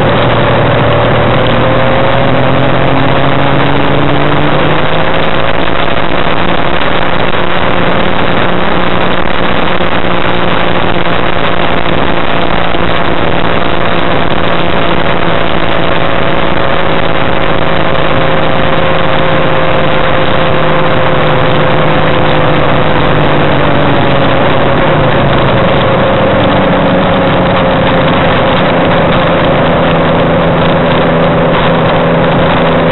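Challenger II ultralight aircraft's engine running, heard from inside the cockpit over a steady noisy rush. Its pitch climbs over the first few seconds, holds steady, then drops back about 24 seconds in.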